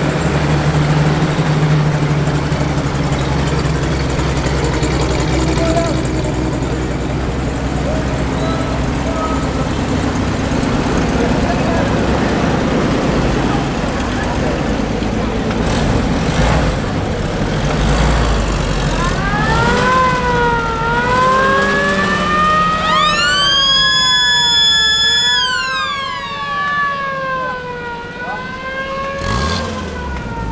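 Engines of restored WWII military vehicles, a half-track and then Willys jeeps, running as they drive slowly past. From about 19 seconds a siren wails, rising and falling in pitch, with a second, higher tone sweeping up and holding for a couple of seconds near the middle of the wail.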